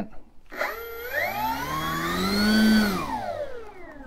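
Electric motor and propeller of an FMS PA-18 Super Cub RC model run up on the throttle: a whine that starts about half a second in, rises in pitch to its loudest near three seconds, then winds down as the throttle is pulled back.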